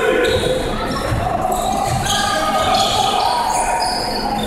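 Basketball game sounds in a gymnasium: a ball bouncing on the hardwood court amid distant players' and spectators' voices, echoing around the hall.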